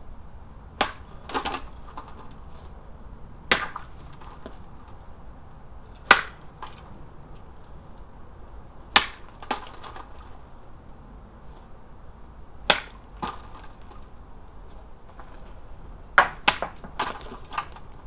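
A homemade short sword, ground from a steel weed slasher, striking plastic milk bottles in a cutting test: sharp cracks about every three seconds, several followed by a softer knock about half a second later, with a quick run of strikes near the end.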